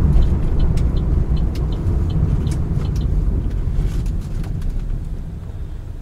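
Low rumble of road and engine noise heard inside the cabin of a Chevrolet Aveo 1.6 hatchback braking to near walking pace. The rumble fades over the last second or so as the car slows.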